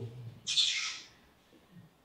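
A short breathy hiss about half a second in, the presenter's breath into the microphone between sentences, then silence.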